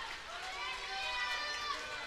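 Faint voices in the hall, far quieter than the amplified preaching either side; no one speaks into the microphone.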